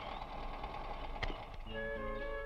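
Steady background hiss on a film soundtrack, a single sharp click a little over a second in, then background music with held notes coming in near the end.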